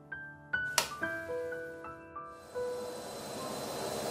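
Washing-machine sound effects: a sharp click as the button is pushed, then a few held electronic tones starting one after another, then the machine's running noise swelling in the last second or so as it starts to shake.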